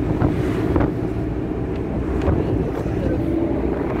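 Steady road and engine noise of a moving vehicle heard from inside it, with wind buffeting the microphone and a few light knocks and rattles.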